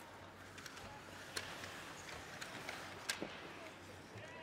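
Ice hockey play in an arena: sharp clacks of sticks on the puck and ice, loudest about one and a half seconds in and again just after three seconds, over a steady murmur of the crowd.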